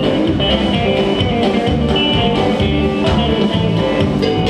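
Live rock band playing: electric guitars, electric bass and a drum kit keeping a steady beat.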